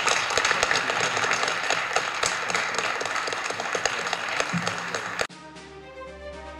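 Audience applauding, a dense patter of many hands clapping. About five seconds in it cuts off abruptly and gentle music begins.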